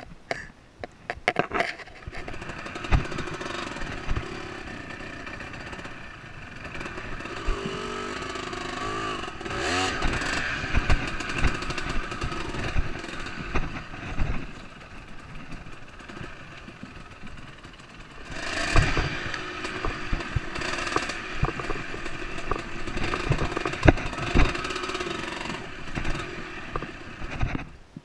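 Enduro dirt bike engine running on a rough trail, revving up and down, loudest in two long stretches. Many sharp knocks and clatters from the bike over the rough ground sound through it. The sound cuts off suddenly at the end.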